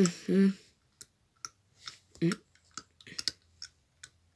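A hummed 'mm' in a person's voice ends about half a second in. It is followed by a string of short, irregular clicks, with one brief voiced blip a little after two seconds.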